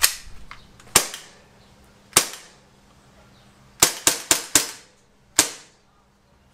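H&K USP CO2 blowback air pistol firing eight shots, each a sharp crack: three about a second apart, then a quick run of four, then one more near the end.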